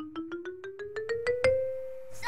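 Musical sound effect: a quick run of bright, chime-like struck notes, about eight a second, rising steadily in pitch and settling on one held note about one and a half seconds in.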